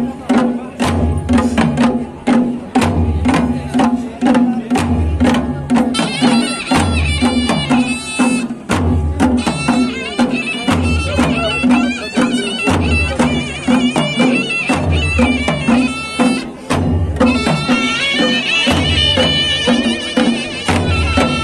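Traditional Kullu folk drum ensemble playing. Large dhol drums and small nagara kettle drums keep up a dense, steady beat, with a deep boom about every two seconds over a steady droning tone. About six seconds in, a shrill wind instrument joins with a wavering melody.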